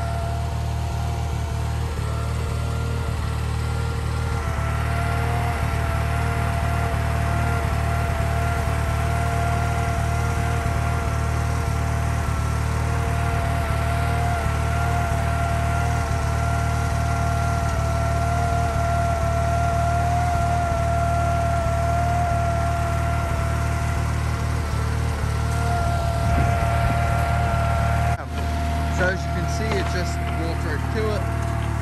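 Ingersoll garden tractor engine running steadily at idle, with a steady high whine over its low hum. Near the end there is a brief dip and the sound changes as the tractor moves off pulling the cart.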